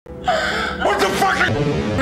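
A woman crying and gasping, her voice high and breaking.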